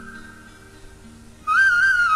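Flute playing a slow melody over soft low held notes. A note dies away, and about one and a half seconds in a new, louder phrase begins.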